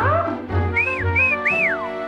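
Bouncy cartoon score with a regular bass beat. A quick upward swoop sounds at the start, and about halfway through comes a whistled phrase of three arching notes, each sliding up and falling away.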